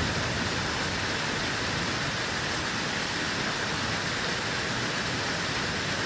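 Steady, even rushing of a waterfall, a hiss-like roar of falling water with no change in pitch or rhythm.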